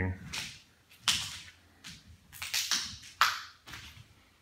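A series of short, irregular scuffing and rustling sounds, about seven in four seconds, each a brief hiss with quiet in between.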